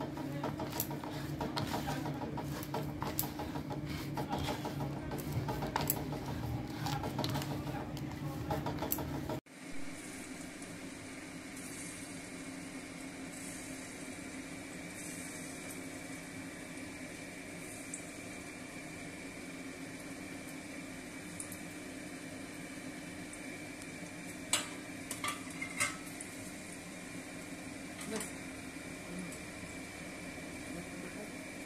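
Hands kneading crumbled chhana (fresh cottage cheese) with spices in a pan, with many small clicks and clinks against the pan. After an abrupt cut about nine seconds in, chhana balls shallow-frying in oil in a steel wok give a steady, even sizzle with a constant hum under it and a few clicks near the end.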